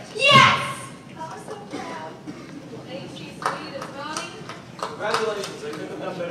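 Teenage voices on stage: a loud shout with falling pitch about half a second in, then more short bursts of voices.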